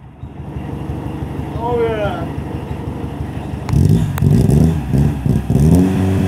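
1981 Volkswagen Rabbit engine running on its first start after sitting seven years: a rough, pulsing idle for the first few seconds, then revved up and down near the end.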